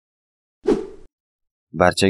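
A single short pop-like sound effect with a quickly falling pitch, cutting off sharply, followed near the end by a voice starting to speak.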